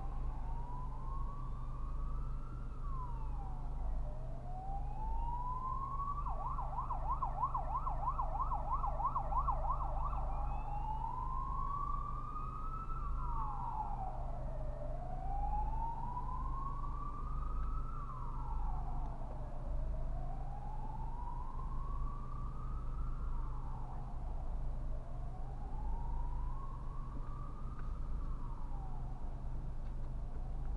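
An emergency vehicle siren wailing, its pitch slowly rising and falling about every five seconds, switching to a fast warbling yelp for about four seconds some six seconds in. It is heard from inside a car over a steady low drone.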